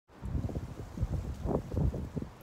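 Wind buffeting a phone's microphone, heard as irregular low rumbling gusts.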